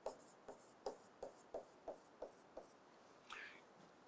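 Faint pen strokes on a writing board as a row of small loops is drawn, with a short tap about three times a second. A faint higher squeak of the pen follows near the end.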